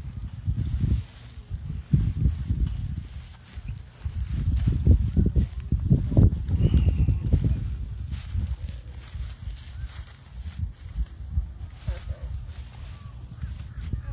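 Wind buffeting a phone's microphone outdoors: a low, uneven rumble that comes in gusts, strongest about five to seven seconds in.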